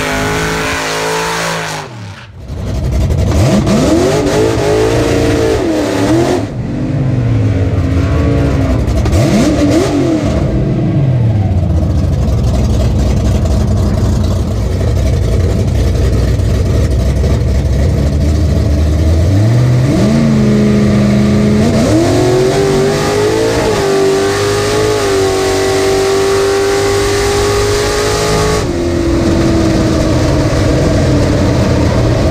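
Hot-rodded 1927 Model T drag car's engine, revved in a few rising and falling blips, then idling low and steady. Later it launches, the revs jumping up in two quick steps and then climbing steadily under full throttle down the strip, easing off slightly near the end.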